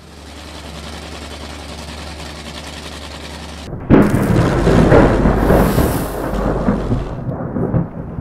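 A nitro Funny Car's supercharged V8 is spun on the starter with a steady whir for about three and a half seconds, then fires with a sudden loud start and runs very loud and ragged until near the end.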